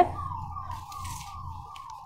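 A siren-like tone that slides down in pitch and repeats about three times a second, under a low hum.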